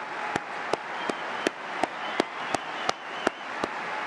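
Large indoor audience applauding, with sharp single claps standing out evenly, about three a second, over the steady wash of clapping.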